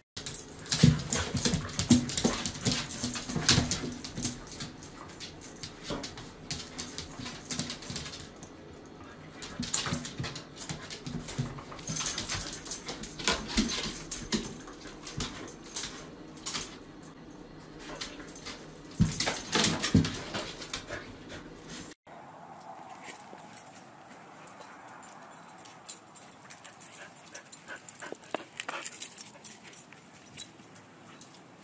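Corgi-husky mix dog whining, with clicking and high metallic jingling as it moves. About two-thirds of the way through, the sound cuts to a quieter, steady outdoor background.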